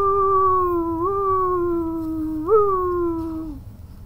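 A person's voice imitating the howling wind, 'whooo-whooo wheee-whooo', as one long held howl. Its pitch jumps up about a second in and again past the middle, sliding down after each jump, and it breaks off shortly before the end.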